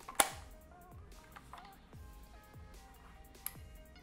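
Soft background music of thin, sustained notes. About a fifth of a second in, a single sharp plastic click, the loudest sound here, as the battery is snapped into the back of the LED video light, followed by a few fainter ticks of handling.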